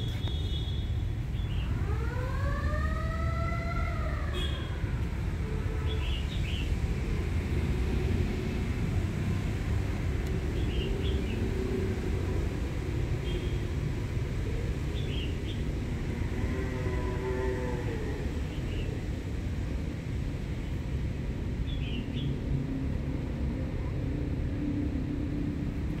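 Steady low rumble of road traffic, with an engine's pitch rising and falling twice, about two seconds in and again around sixteen seconds. Short high chirps come now and then.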